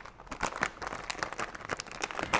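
A Lay's potato chip bag crinkling as it is handled and pulled open at the top: a rapid, irregular string of crackles.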